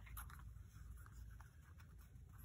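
Near silence, with a few faint rustles of a thermal-paper shipping label being peeled up and handled.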